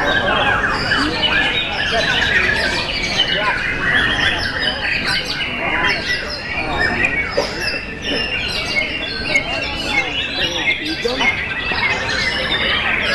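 Several caged white-rumped shamas (murai batu) singing at once in a dense, continuous chorus of rapid varied whistles, chirps and harsh notes, with a murmur of people's voices underneath.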